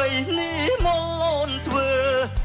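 Male vocalist singing live into a microphone over band accompaniment, holding wavering notes above a steady bass line with a drum beat.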